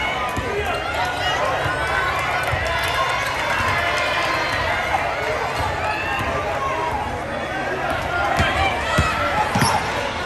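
Gym crowd voices and shouts during a basketball game, with a basketball bouncing on the hardwood court, a few sharp thuds near the end.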